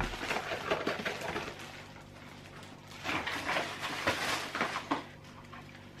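Rustling and light clicks of hands handling paint supplies and packaging on a tabletop, in two spells: one just at the start and a longer one about three seconds in.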